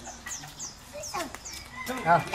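Quiet lull with faint distant voices and a few short, high, falling chirps.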